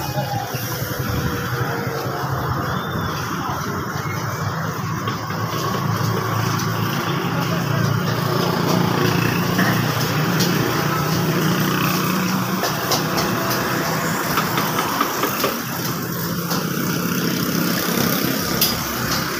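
Street noise dominated by a steady low engine hum from motor traffic, with voices in the background and a few short sharp clicks in the second half.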